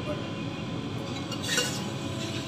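Steel kitchen utensils clinking against each other, a few sharp clinks about a second and a half in, over a steady background hum.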